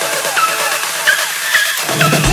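Electronic dance music with a repeating synth figure of short sliding notes, about twice a second, and no bass; the lower part thins out near the end, as in a build-up before a drop.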